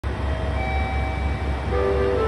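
Steady low rumble of a train standing at a station platform, with a few faint steady tones over it. Near the end a melody of chime-like notes begins.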